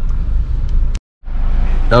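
Steady low rumble of a car's engine and road noise heard from inside the cabin while driving, cut off by a brief total dropout about halfway through.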